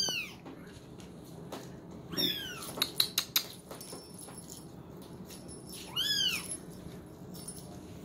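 Kittens meowing: three short, high-pitched mews that rise and fall, one at the start, one about two seconds in and one about six seconds in. A few sharp clicks come about three seconds in.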